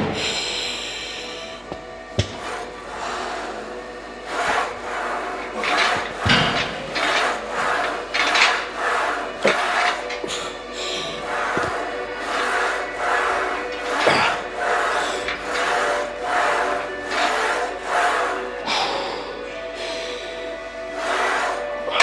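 A weightlifter's hard, rhythmic breaths through a set of incline presses on a Smith machine, about one every second or so, with a few light knocks of the bar, over steady background music.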